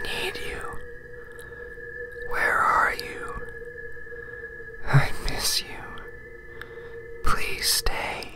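Eerie Halloween soundtrack: a steady held drone of two tones with ghostly whispering voices swelling in three times, about two, five and seven seconds in.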